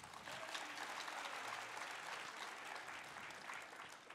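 Audience applauding, a dense patter of hand claps that sets in at once and fades out near the end.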